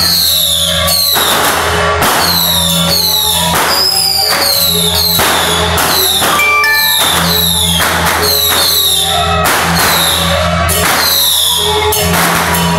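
Temple procession percussion music: cymbal and gong strokes in a steady rhythm, a little under two a second, each crash ringing and sliding down in pitch over a steady low hum.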